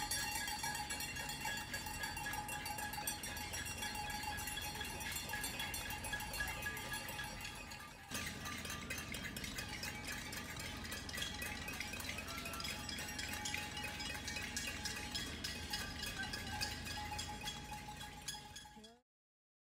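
Handheld cowbells clanking continuously, dipping briefly about eight seconds in and fading out at the end.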